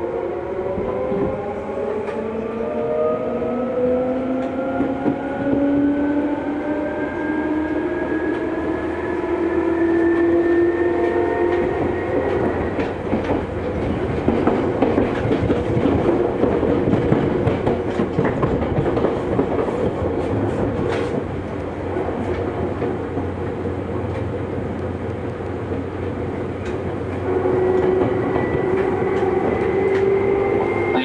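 Seibu 2000 series electric train accelerating away from a station, heard from inside the car: its motors whine in several tones that rise together for about the first twelve seconds. After that comes steady rolling noise with wheels clacking over the rail joints, and a steady whine returns near the end.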